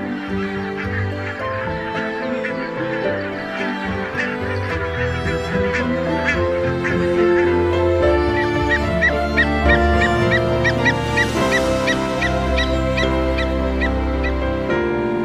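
Geese honking, many short calls in quick succession, over background music of held notes.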